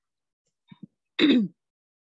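A woman clearing her throat: two faint short sounds, then one louder clear, falling in pitch, a little past halfway.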